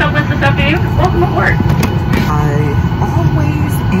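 Steady low rumble of an airliner cabin, with voices talking over it.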